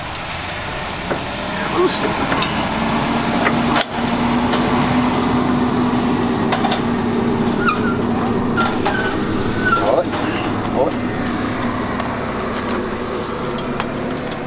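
An engine running steadily, with a low hum, stepping up in level about four seconds in. Sharp clicks and clinks of barbed wire being handled at the dispenser's spools and rollers are heard over it.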